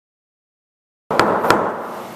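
Silence for about the first second, then workshop sound cuts in abruptly: a steady hiss of room noise with two sharp knocks about half a second apart.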